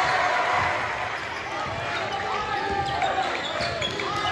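Basketball game on a gym court: many short sneaker squeaks on the hardwood, with ball bounces and the voices of players and crowd in the gym.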